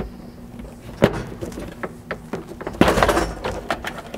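Plastic trim clips snapping free as an interior plastic trim panel is pulled off: one sharp snap about a second in, then scattered clicks and a burst of plastic rattling and scraping about three seconds in.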